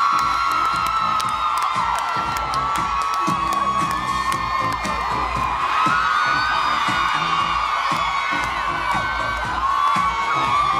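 DJ dance music playing loudly with a steady beat, with a crowd cheering, screaming and whooping over it throughout.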